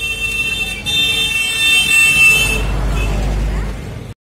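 A vehicle horn sounding one long steady blast for about two and a half seconds. A low rumble follows once it stops.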